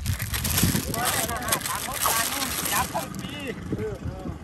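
People talking, the words not picked up by the transcript, with a crackling rustle over the first three seconds.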